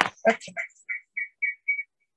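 A few garbled syllables of a woman's voice, then a run of about five short high-pitched pips, roughly four a second, after which the sound cuts out.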